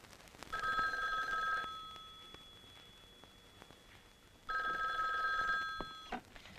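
Telephone bell ringing twice, each ring about a second long, with the ring lingering and fading after it.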